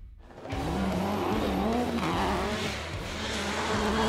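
Rally car engine revving hard, its pitch rising and falling repeatedly as it goes through the gears.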